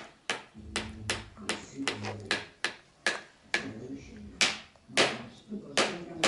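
A green plastic baby spoon banged again and again on a plastic high-chair tray: a quick, irregular run of sharp taps, several a second.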